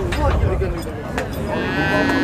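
Cattle mooing: a long pitched moo starts about one and a half seconds in and runs on past the end, over men's voices.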